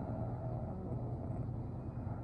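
A steady low background rumble or hum, with a faint pitched sound in the first moment.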